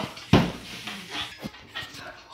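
Handling noise from a phone camera held close: a thump about a third of a second in, then rubbing and breathy noise with a couple of sharp clicks.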